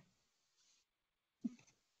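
Near silence, broken by one brief faint sound about one and a half seconds in.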